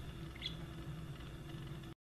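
Faint room tone with a steady low hum, one brief faint high squeak about half a second in, then the sound cuts out abruptly just before the end.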